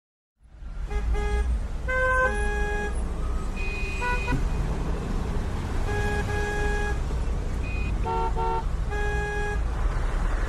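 Congested city traffic: a steady engine rumble with many car horns honking one after another, short toots and longer blasts at different pitches, some overlapping. The sound fades in about half a second in.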